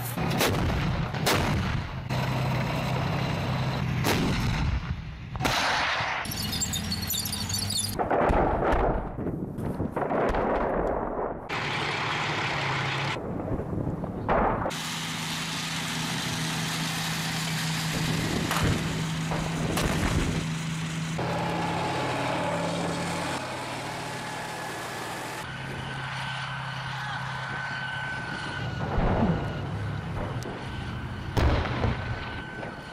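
Battle sounds cut together: the engines of tracked armoured vehicles (tanks and an infantry fighting vehicle) running with a low steady drone, under repeated gunshots and heavier artillery-like firing. The mix changes abruptly several times, and there is a louder burst of fire near the end.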